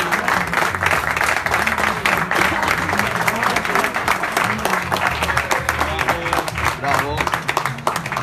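A crowd applauding steadily throughout, with background music with a bass beat under it and some voices calling out.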